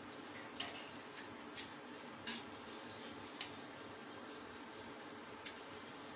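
Pot of water with rice in it heating on the stove: a faint steady hiss, broken by five short, sharp ticks spread through.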